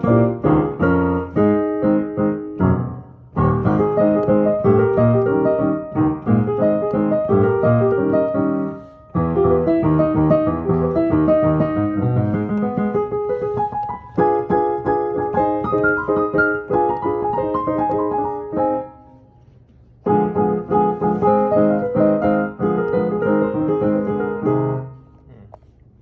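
A song played on a Yamaha piano, chords and melody together, broken by short pauses about three, nine and nineteen seconds in. The playing stops near the end.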